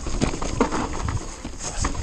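2018 Orbea Rallon 29er enduro mountain bike descending a dirt trail at speed: tyres rolling over rough ground, with a dense, irregular clatter of knocks and rattles from the bike over a low rumble.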